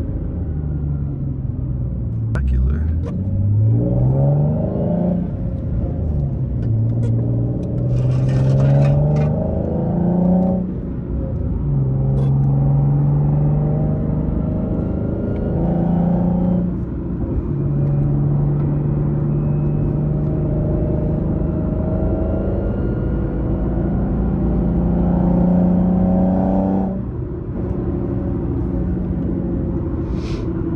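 Nissan 370Z's 3.7-litre V6 with a loud modified exhaust, heard from inside the cabin while driving a manual gearbox. The revs climb and drop back several times as it shifts up, hold steadier while cruising between pulls, and fall off near the end as the throttle is lifted.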